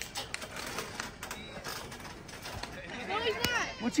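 Low background of people's voices, with faint scattered ticks. A voice calls out more loudly about three seconds in.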